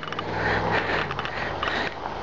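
A car driving slowly past on pavement: a steady low engine hum under tyre noise, with scattered light clicks and scrapes.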